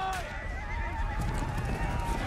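Horses whinnying over the low rumble of a galloping cavalry charge's hooves.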